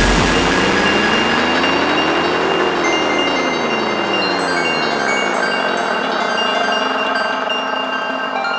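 Electronic dance music at a breakdown. The kick drum drops out, and a synth sweep rises in pitch for about two and a half seconds and then falls back, over sustained high synth tones.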